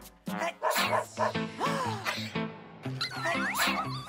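Background music with a small dog whining a few times over it: one long call falling in pitch about one and a half seconds in, and short rising calls near the end.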